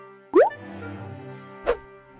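Two cartoon 'bloop' pop sound effects, quick upward-sliding pitches, the first and louder about a third of a second in and a shorter one near the end, over soft background music.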